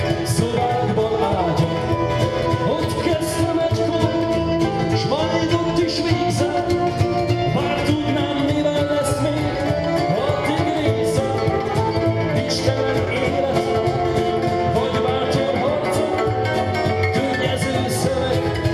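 Live Hungarian folk band playing a song: a man singing over acoustic guitar, violin and double bass.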